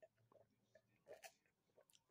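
Near silence with a few faint, short mouth and swallowing sounds of someone drinking from a cup.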